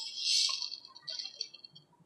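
Urad dal sizzling and crackling in hot coconut oil, loudest in the first second and dying away over the next.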